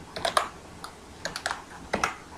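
Computer keyboard keys being typed, a few quick keystroke clicks in two short runs about a second apart.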